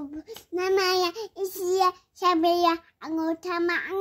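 A toddler singing in about four short phrases of high, held notes, with brief pauses between them.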